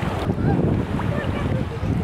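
Wind buffeting the microphone over open sea water, a low fluttering rumble, with small waves lapping close by.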